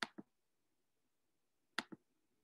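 Two faint, sharp double clicks, one at the start and one about 1.8 s later, each a press and release of a computer button. The clicks step the slide's text on line by line.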